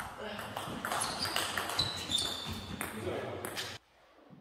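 Table tennis ball clicking repeatedly off bats and tables in a sports hall, with a few short high squeaks and murmuring voices around. The sound cuts off suddenly near the end.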